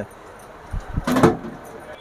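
Sheet-metal pump control box being set down on a shelf: a couple of soft knocks, then a brief metallic rattle about a second in.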